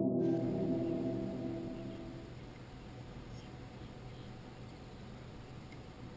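A sustained ringing tone of several steady pitches fades away over the first two seconds, leaving only faint steady background hiss.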